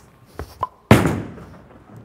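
A bowling ball dropping onto the wooden-look lane just after release: two light knocks, then a loud thud about a second in, followed by a rolling rumble that fades as the ball travels away.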